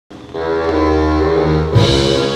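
Live band playing, heard through a phone microphone: a held chord with a low bass note, then drums and the full band come in near the end.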